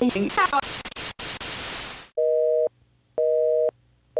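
A loud burst of white-noise static with brief garbled voice fragments, cutting off about two seconds in. Then a telephone busy signal follows: a steady two-tone beep, half a second on and half a second off, heard twice.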